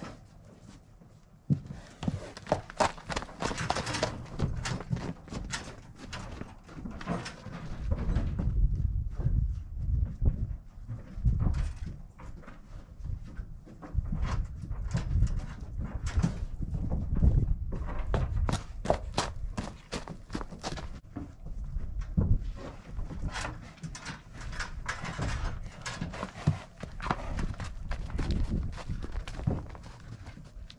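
Draft horses shifting and walking on frozen, straw-strewn ground, irregular hoof knocks and thuds throughout, with stretches of low rumble.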